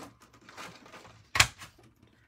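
Faint handling rustle of paper and tools on a craft table, then one sharp click about one and a half seconds in.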